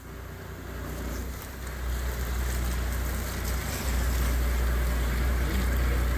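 Boat under way at sea: a steady low engine rumble with water rushing past the hull, growing louder in steps over the first few seconds.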